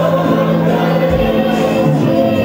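A congregation of many voices singing together in worship over steady musical backing, with long held notes.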